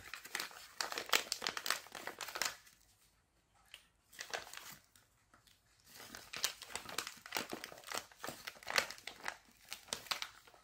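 Thin plastic packet crinkling as it is handled and pulled open, in two spells of dense crackling with a quieter pause of a few seconds between them.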